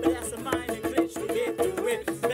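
Live acoustic band music: a man singing with a wavering, held melody over acoustic guitar and hand-struck drum beats.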